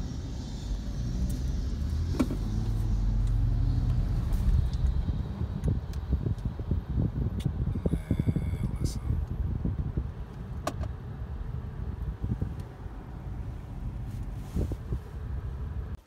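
A car in motion heard from inside the cabin: a low road and engine rumble that grows louder a few seconds in and then eases, with a few light clicks.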